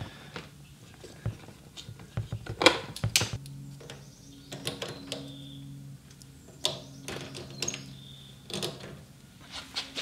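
Scattered clicks and knocks of battery charger cables and clamps being handled and clipped onto a riding mower's battery terminals, with a faint low hum for a few seconds in the middle.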